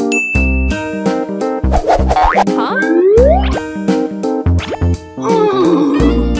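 Bouncy children's background music with cartoon sound effects over it: a short bright ding about half a second in, then rising sliding tones around the middle.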